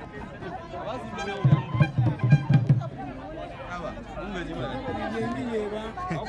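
Voices chattering, with a short run of low, loud drum beats starting about a second and a half in and lasting a little over a second.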